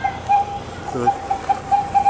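Small wheeled tourist road train sounding its horn in a quick series of short beeps at one pitch, about three a second, ending in a longer beep.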